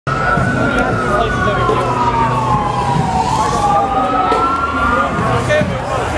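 An emergency-vehicle siren wails, sweeping slowly down in pitch over several seconds and then back up near the end, over a steady low rumble of street noise.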